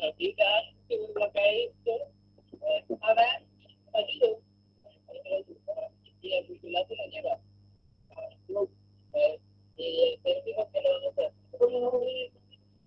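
Speech from a video's soundtrack relayed through a video call, muffled and hard to make out, in short broken bursts over a steady low hum.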